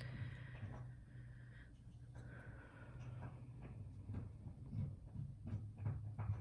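Faint soft taps and brushing of tarot cards being slid and straightened by hand on a tabletop, a little busier in the second half, over a low steady hum.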